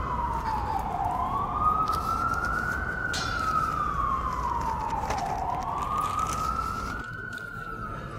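Emergency vehicle siren in its wail pattern: one tone rising and falling slowly, about four seconds per swing.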